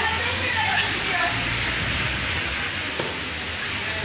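Steady outdoor hiss of wet snow falling on a street, with a low wind rumble on the microphone and faint voices early on.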